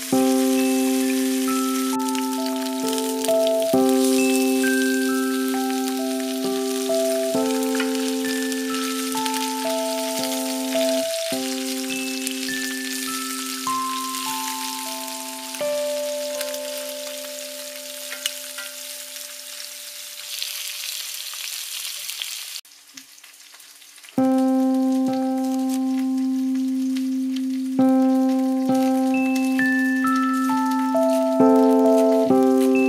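Chicken wings sizzling steadily in hot oil in a frying pan under a light mallet-percussion melody. About two-thirds of the way through, the sizzle cuts off suddenly and only the music is left.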